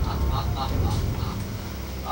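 A person's voice in short, faint bursts during the first second, over a low rumble.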